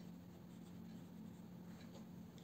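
Faint, brief scratches of a paintbrush stroking watercolour paper, over a steady low hum.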